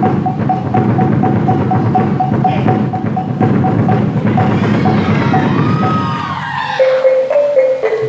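Gendang silat accompaniment music: busy hand-drumming under a steady, regularly repeated higher note, with a wavering reed-like melody entering in the second half. The drumming thins out briefly near the end.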